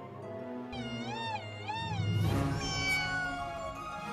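A cartoon cat yowl over background music: a high call wavering up and down twice, then a longer, slowly falling call.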